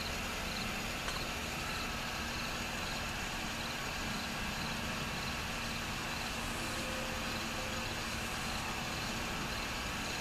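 Steady background hiss with a low hum, and faint high chirps recurring at irregular intervals.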